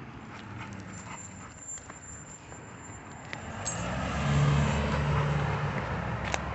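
Footsteps of a person and a leashed dog on pavement, faint and scattered, then a car driving past, swelling up with a low engine hum about four seconds in and easing off near the end.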